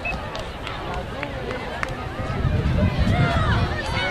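Many overlapping children's voices calling out and chattering, several people at once. A low rumble, typical of wind on the microphone, grows louder about halfway through.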